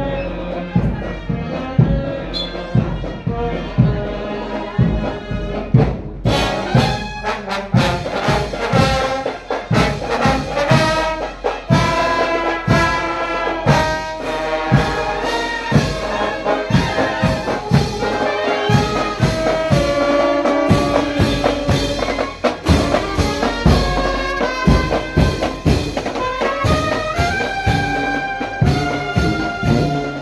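Brass marching band playing a march while parading: trumpets, trombones and sousaphone over a steady drum beat. The brass comes in fuller and brighter about six seconds in.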